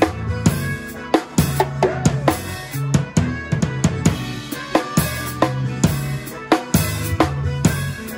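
Drum kit played live in a band song: bass drum, snare and cymbals in a steady groove, with the band's bass and other pitched instruments underneath.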